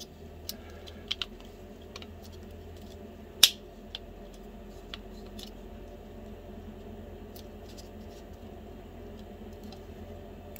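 Light clicks and taps of a 3D-printed PLA N scale passenger car being handled and its body and wiring pressed into place, with one sharper click about three and a half seconds in.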